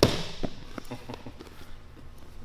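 A sharp thump on the foam grappling mat, then a few softer knocks and shuffles as a grappler moves her knees and hands across the mat onto her partner.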